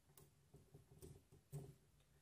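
Near silence with a few faint, light clicks: small bolts being placed by hand into an aluminium prop adapter on top of a brushless motor.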